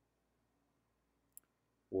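Near silence broken by a single short click a little before the end, then a man's voice starts speaking.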